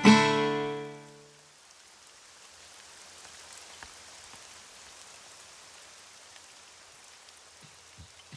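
An acoustic guitar's final strummed chord rings out and fades away over about a second and a half. After it comes a faint, steady hiss of outdoor ambience with a few small ticks.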